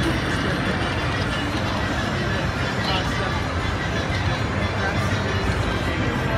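Steady din of crowd babble mixed with slot-machine music and electronic jingles, with no pauses. A short high chime sounds about three seconds in.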